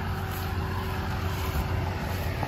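A sprayer's engine idling nearby, a steady low hum with a constant tone above it.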